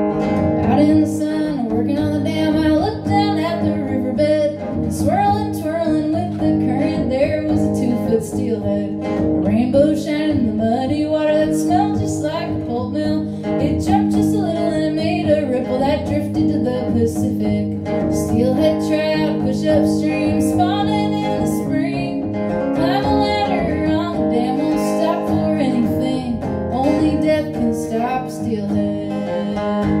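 Solo acoustic guitar strummed steadily while a woman sings a folk song.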